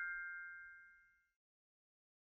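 Bell-like chime from a logo sound effect, ringing out with a few clear tones and fading away, gone about a second in.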